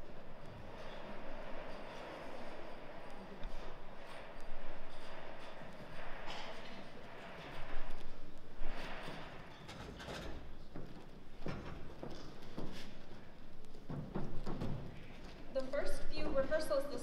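Murmur of an auditorium audience and a band settling on stage, with scattered knocks and clatter of chairs, music stands and instruments.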